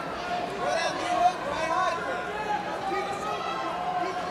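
Many overlapping voices of spectators and people around the cage shouting and calling out, with one brief louder peak a little over a second in.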